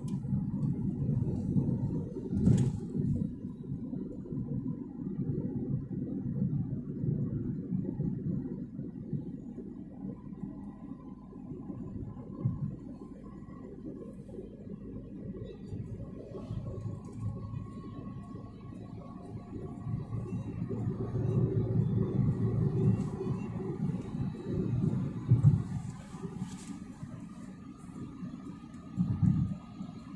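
Car driving on a highway, heard from inside the cabin: a steady low rumble of road and engine noise that swells for a few seconds past the middle, with a couple of short sharp bumps.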